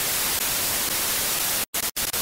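Analogue television static: a steady hiss of white noise, cut to silence briefly twice near the end.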